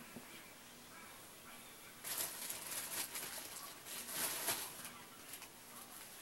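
Rustling and crinkling as a disposable diaper and its plastic packaging are handled, in irregular bursts from about two seconds in until near the end.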